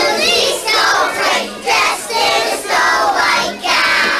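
A group of young children singing together in unison, in short phrases with brief breaks between them.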